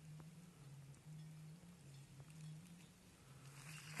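Near silence: faint outdoor background with a faint low, steady hum and a couple of faint ticks.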